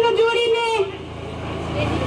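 A woman speaking into a public-address microphone, pausing about a second in, with a steady low rumble underneath during the pause.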